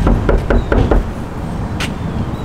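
A fist knocking on a front door, about five quick knocks in the first second, then a single sharp click near the end, over a steady low rumble.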